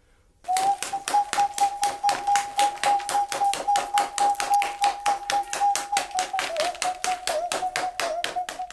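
Rapid, even tapping, about five taps a second, that starts suddenly half a second in over a steady held tone; the tone begins to waver after about six seconds.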